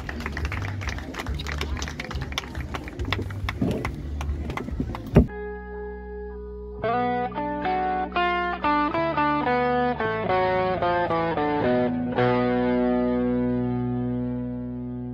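Busy live crowd sound with many sharp claps or beats, cut off suddenly about five seconds in. Then an electric guitar with effects plays a slow melody of ringing single notes and ends on a long held chord.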